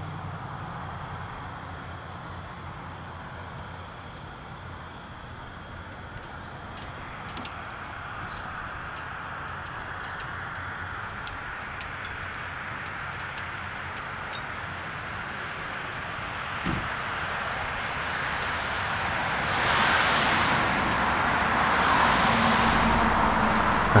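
A steady rushing noise that slowly swells and grows louder about twenty seconds in, with a few faint clicks scattered through it.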